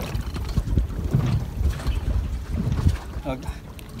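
Gusty wind rumbling on the microphone over choppy water slapping at the side of a small boat, with a few brief knocks.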